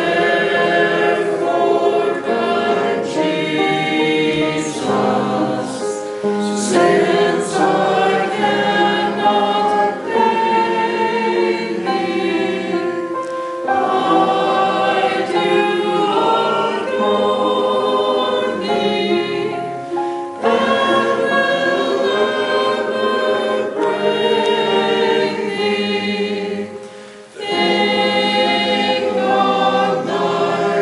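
Church choir of men's and women's voices singing together, with three short breaks between phrases.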